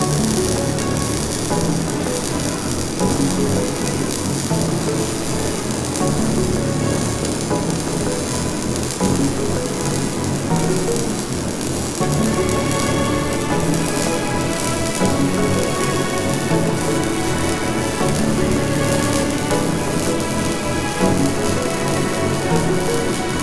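MIG welding arc on sheet steel, crackling and sizzling steadily like frying bacon, under background music that changes about halfway through.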